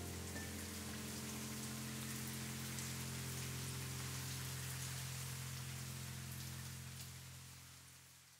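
Light rain falling on still water, small drops dripping onto the surface, over a held low chord of background music. Both fade out near the end.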